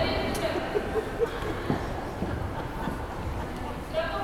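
Indistinct voices and shouts echoing in a large sports hall, with a few faint knocks from play on the court.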